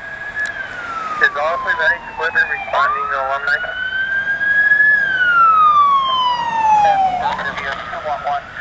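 Fire apparatus electronic siren on wail, slowly rising and falling twice. Short bursts of a second siren's rapid warble come in over it about a second in and again near the middle.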